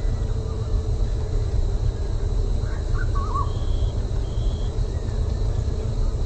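Steady low rumble of outdoor background noise, with a few faint bird chirps about halfway through.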